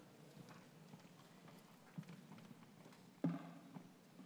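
Faint footsteps of hard-soled shoes on the stage floor, with scattered small knocks and one sharper knock a little after three seconds in.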